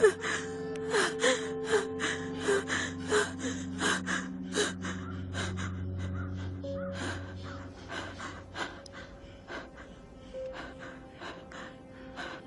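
A sustained, low music drone under a person's repeated gasping, sobbing breaths, which come every half second or so, then thin out and grow fainter in the second half.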